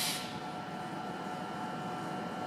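Faint, steady background noise of a railway station platform, with a few thin steady hum tones in it; a louder hiss cuts off just after the start.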